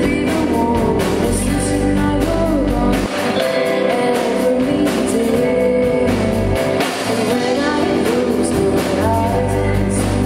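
Live rock band: a woman singing lead over electric guitars, bass guitar and a drum kit. The deep bass drops out for a few seconds in the middle and comes back near the end.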